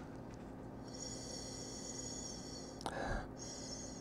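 Faint steady room hum and hiss, with one short sniff near the end as a wine glass is held to the nose.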